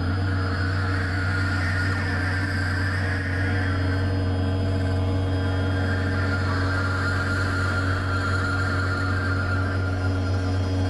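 Experimental synthesizer drone: a heavy, steady low tone with many held pitches stacked above it and a shimmering, slowly wavering higher layer, unchanging in loudness.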